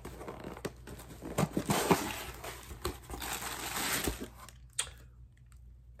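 Packaging crinkling and tearing by hand as a coffee mug is unwrapped, with scattered small clicks and rustles that die down about four and a half seconds in.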